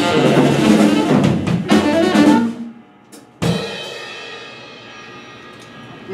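A live jazz quartet of saxophone, electric guitar, upright bass and drum kit plays the closing bars of a tune, then cuts off sharply about two and a half seconds in. About a second later a single final accented hit from the band, with drums and cymbal, rings out and slowly fades.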